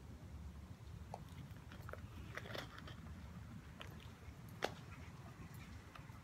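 Faint scattered small clicks and crunches of a blue Great Dane puppy chewing a training treat, with one sharper click a little past two-thirds of the way in.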